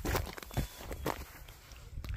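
Footsteps of a person walking on a hillside trail: a few steps about half a second apart, over a low rumble of the handheld phone moving.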